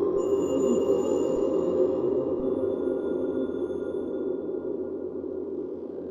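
Free-improvised experimental music for live electronics and guitar: a dense, steady low drone with thin high tones held over it. One set of high tones enters just after the start and another near the middle, while the whole slowly gets a little quieter.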